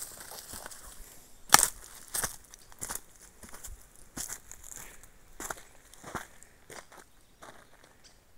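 Footsteps crunching on dry leaves, twigs and stones of a dirt trail, irregular steps with a sharper crack about one and a half seconds in.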